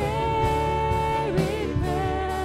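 Live worship band playing a song: a woman's voice holds one long sung note for over a second, then moves on, over keyboard and guitars with a steady drum beat.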